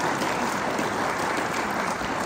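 Audience applauding, a steady, dense patter of many hands clapping.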